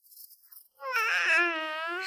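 A baby crying: one wavering cry that starts just under a second in.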